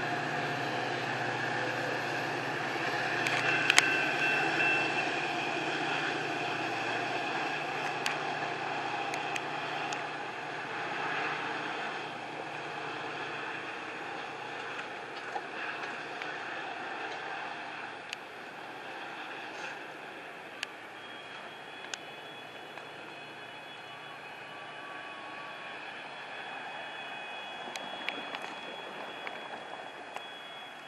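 Metra commuter train's diesel locomotive pulling out of the station, its engine running steadily and then fading as the train moves off. A car drives past near the end.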